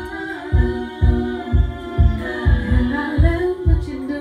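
A woman singing a cappella into a microphone over a steady low beat of about two pulses a second, with a sustained lower vocal part beneath the moving melody.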